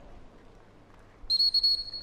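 Gundog training whistle blown about a second in. A loud, high, briefly broken blast runs into one held note.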